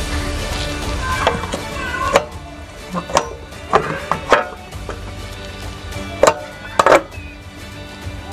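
Sharp metal knocks and clicks from a scooter's kick-start lever and variator cover being handled, about eight of them bunched between two and seven seconds in, over background music.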